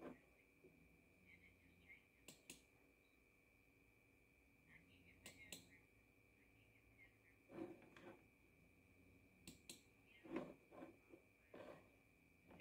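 Near silence: room tone with a faint steady high whine and a few faint clicks, several in close pairs, plus a couple of soft bumps.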